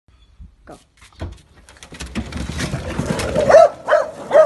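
A hatchback's boot lid is unlatched and swung open, then a pack of beagles scramble out over the bumper, a dense clatter of paws and claws on the car and paving. One beagle gives a single loud bay near the end.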